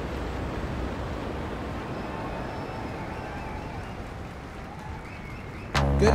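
Steady wash of small waves on a beach shore, slowly fading. A hip-hop track with a heavy bass beat comes in loudly near the end.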